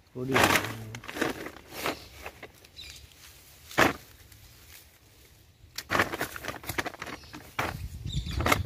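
A plastic carrier bag rustling and crinkling as fish are handled and dropped into it: a burst of crinkling at the start, one sharp crackle just before the middle, and a flurry of rustling near the end.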